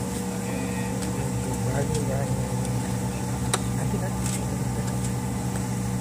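Steady low drone of a jet airliner's engines heard from inside the cabin as it moves along the runway before the takeoff roll, with faint voices and a single click about three and a half seconds in.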